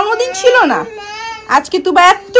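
A toddler fussing and whining, with one drawn-out whiny cry in the middle, mixed with a woman's high-pitched talk.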